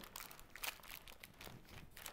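Faint crinkling of parchment paper and soft crunching of a sticky oat granola mixture as hands press and pat it flat in a lined sheet tray, with a few soft crackles.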